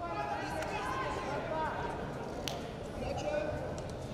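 Voices echoing in a large sports hall, with one sharp click about two and a half seconds in.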